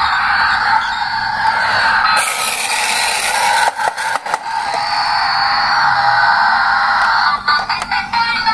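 A battery-powered toy garbage truck's built-in sound effect playing through its small speaker, running steadily, then stopping about a second before the end, when a few sharp knocks follow.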